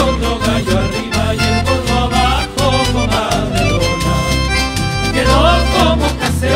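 Chilean folk dance music: a band playing a lively tune over a steady, strong bass beat, with held melody notes.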